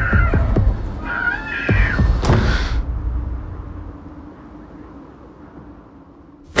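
Two short, high, wavering whining cries over a low rumble, with a few soft knocks at the start. A sharp click with a brief hiss comes about two seconds in, and then the sound fades down.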